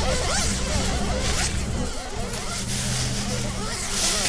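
Many recorded voices overlapping into an indistinct babble with no single clear speaker, over a low steady hum and hiss.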